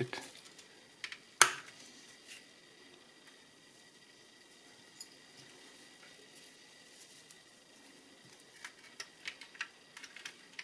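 A sharp plastic click about a second and a half in as a two-piece needle cap on a car instrument cluster is clipped into place, followed by faint small clicks and taps of handling the plastic parts near the end.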